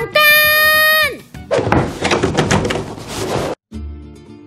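A woman's drawn-out high shout held on one steady pitch for about a second, then falling away. It is followed by about two seconds of dense, noisy sound full of sharp knocks and thuds, which cuts off abruptly.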